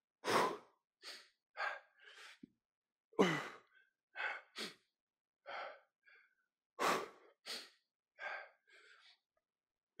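A man breathing hard with exertion while lifting a dumbbell: short, forceful breaths and sighing exhalations, the loudest roughly every three and a half seconds.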